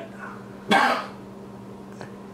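A man's single short cough about a second in, over a faint steady hum.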